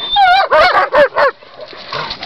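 German Shepherd barking: a quick run of about five short, pitched barks in the first second and a half, then quieter.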